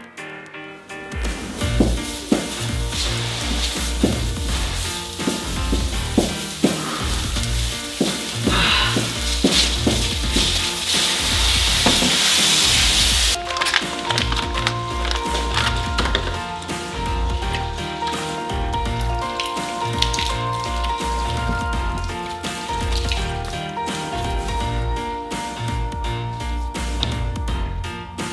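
Background music with a steady beat throughout. Over it, for about the first half, a loud steady hiss of water spraying from a cut high-pressure water line, which stops suddenly about halfway through.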